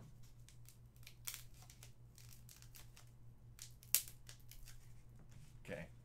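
Tiny air bubbles in a sheet of bubble-wrap-style packing material being popped between the fingers: a scattered run of small sharp pops, with one louder snap about four seconds in.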